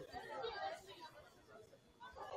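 Indistinct voices chattering, fading out after about a second.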